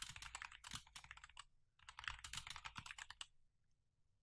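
Soft typing on a computer keyboard: quick keystrokes in two runs with a short pause between them, stopping a little before the end.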